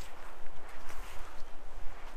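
Wind buffeting the microphone: a low, gusty rumble that rises and falls unevenly.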